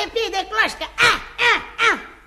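A person's voice making a run of short exclamations, each falling sharply in pitch, the three loudest coming in the second half.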